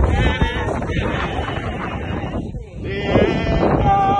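Voices singing long held notes with a wobbling vibrato, the sound of hymn singing at the graveside.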